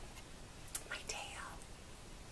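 A woman's voice whispering a word or two about a second in, over faint room tone.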